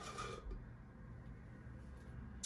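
A brief slurp through a drinking straw from a nearly empty plastic cup at the start, followed by only a faint low hum.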